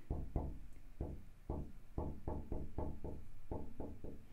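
A marker tapping and dragging on a glass lightboard while digits are written: a quick, uneven run of soft knocks, about three or four a second.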